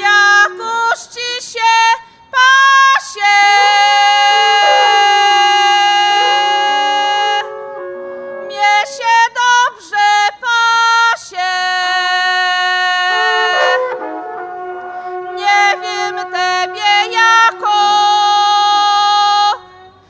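A woman sings short highland phrases in turn with two trombitas, long wooden shepherd's horns, which answer each phrase with a long held note. The horn notes come three times, each lasting a few seconds.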